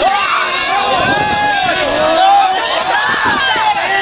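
Crowd of many voices shouting and cheering on tug-of-war teams during a pull, the yells overlapping without a break.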